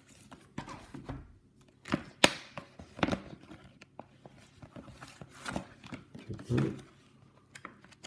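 Clear plastic wrapping being pulled off a pack of notebook paper sheets, and the sheets rustling as they are handled: irregular handling noises with one sharp click about two seconds in.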